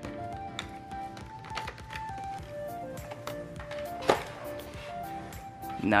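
Soft background music with slow held notes, over scattered clicks and knocks of the robot vacuum's plastic bumper being worked loose and lifted off; one knock about four seconds in is louder.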